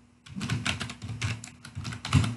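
Computer keyboard being typed on: a quick, uneven run of key clicks as a word is typed out.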